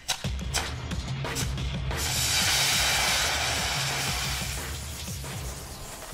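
Background music with drums, over which a small solid-propellant rocket motor burns with a rushing hiss from about two seconds in, lasting about three seconds and fading out.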